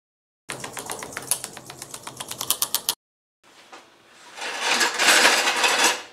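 Homemade compressed-air engine running, its valve gear and push rods clicking in a quickening rhythm for a couple of seconds before cutting off. After a short gap, a hiss of compressed air swells up and dies away near the end.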